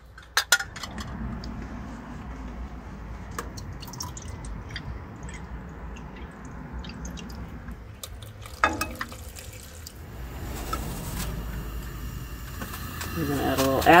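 Water poured from a plastic measuring cup onto dry oats and raisins in a cooking pot, a steady pour, with a few clicks of the cup against the pot near the start.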